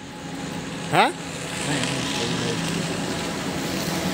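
Road traffic noise, a steady rush that grows louder from about a second and a half in, after a man's short questioning "huh?".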